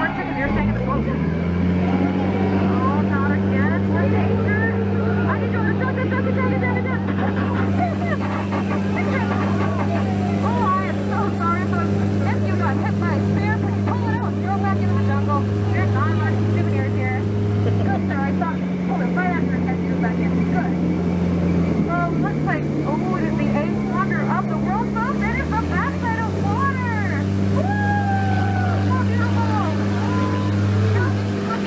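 Jungle Cruise tour boat's motor droning steadily, picking up about a second in, dropping to a lower pitch about two-thirds of the way through and climbing again near the end, under the chatter of passengers.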